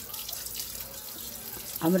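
Water spraying steadily at high pressure from a handheld shower head, rinsing the soil off a plant's roots.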